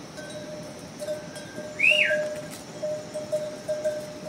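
Bells on walking pack yaks clinking irregularly at one steady pitch. A single rising-and-falling whistle, the loudest sound, comes about halfway through.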